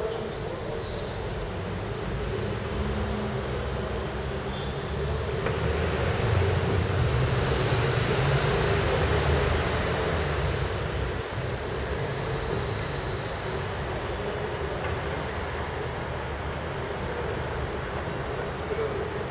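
Steady city-street background noise, with a low rumble that swells for a few seconds around the middle and then settles back.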